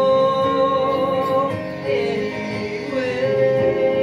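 A man singing a musical-theatre song over instrumental accompaniment, with long held notes: one sustained for the first second and a half, a brief change of pitch, then another held note from about three seconds in.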